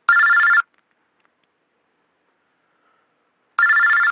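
A telephone ringing: two short warbling rings about three and a half seconds apart.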